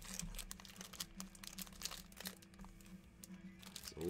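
Faint, irregular crinkling of foil trading-card pack wrappers as hands shuffle through a stack of packs.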